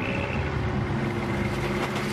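Heavy construction machinery running, a steady engine drone over the noise of work, cutting off just before the end.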